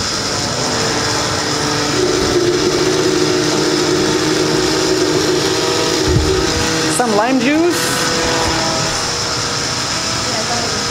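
Countertop blender running steadily, pureeing mango pieces with a little juice added to help it blend. A short sliding pitched sound comes about seven seconds in.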